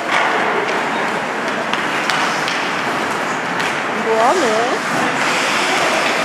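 Sounds of ice hockey play in a rink: a steady hiss of skates on the ice with a few sharp clicks of sticks and puck. About four seconds in, a player gives a short shout that rises and falls.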